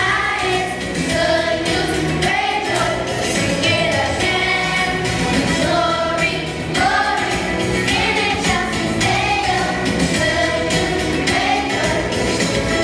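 Children's choir singing a song over instrumental accompaniment with a steady beat.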